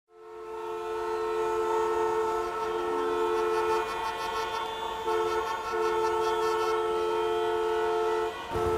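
A long, steady horn blast of two or more tones sounding together. It fades in at the start and breaks off briefly twice, about four and five seconds in, like horns held down in traffic waiting at a red light.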